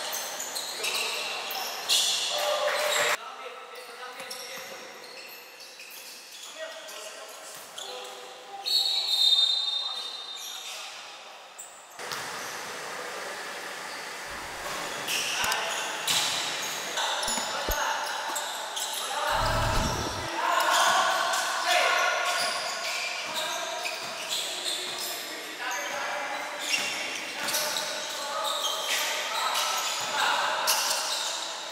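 A basketball bouncing on a hardwood court, with sharp impacts of dribbles and passes and players' indistinct calls and shouts, echoing in a large gym.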